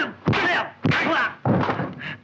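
Kung fu film fight: a quick run of dubbed punch and blow sound effects, about three sharp hits in two seconds, each with a short shout or grunt from the fighters.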